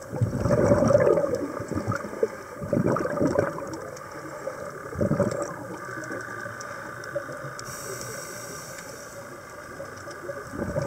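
Scuba diver breathing underwater through a regulator: bursts of exhaled bubbles gurgling out, three in the first half, then a quieter stretch before the next breath.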